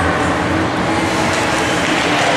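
Steady, echoing din of an indoor ice rink during hockey play: skates on the ice mixed with distant spectators' voices.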